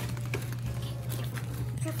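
A few faint light taps and rustles from hands handling a plastic-wrapped gingerbread house on its cardboard base, over a steady low hum.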